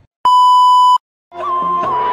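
A single steady, high bleep sound effect, like a censor bleep, lasting under a second and cutting off abruptly. After a brief silence, music with a beat starts a little past the middle.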